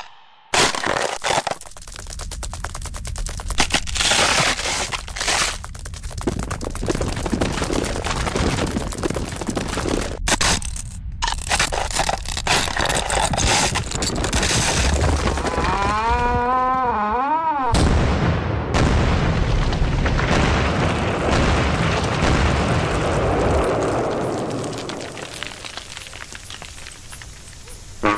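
Cartoon sound effects: a long run of dense crackling noise, broken by a wavering pitched sound about sixteen seconds in, then a heavier rumble that slowly fades near the end.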